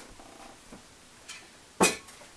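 Faint room noise, then a single sharp knock near the end as someone moves about off-camera handling things.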